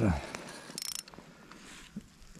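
Small ice-fishing reel and line being handled, with a short quick run of ratchet clicks about three-quarters of a second in and a few faint ticks after.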